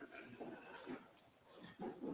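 Faint, indistinct voices of people talking as they greet one another, in short bursts with the loudest near the end.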